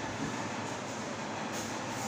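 Steady room noise with a faint low hum and no distinct events.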